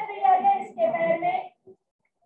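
A child's voice with drawn-out, held pitches, close to singing, cutting off abruptly to dead silence about one and a half seconds in.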